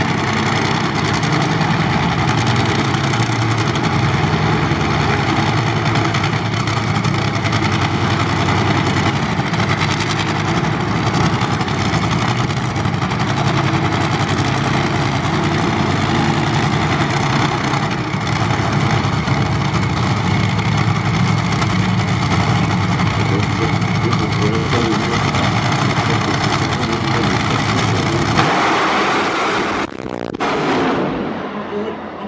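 Supercharged V8 engine of a Top Fuel dragster running loud and steady at idle on the start line. About a second and a half before the end the sound changes abruptly as the car leaves the line.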